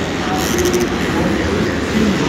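Supercross dirt bikes running and revving around the track, their engines blending into a dense, steady wash of noise that reverberates in the enclosed stadium.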